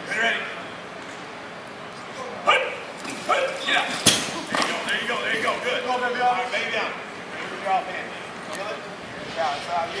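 Men shouting and calling out during a football line drill, with two sharp knocks about two and a half and four seconds in.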